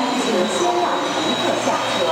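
East Rail Line electric train at the platform: a steady running hum with a thin high whine, overlaid by short squeals that glide up and down in pitch.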